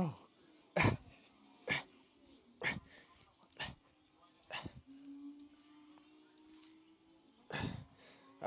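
A man breathing out hard with each rep of bar dips: sharp puffs about once a second, six in a row, then a pause and one more near the end.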